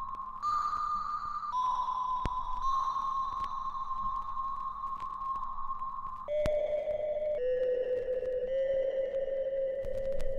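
Slow, quiet background music of long held notes, pure and steady in tone, moving to a new pitch every second or two and dropping lower about six seconds in.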